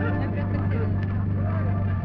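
Indistinct voice over a loudspeaker with a steady low hum underneath.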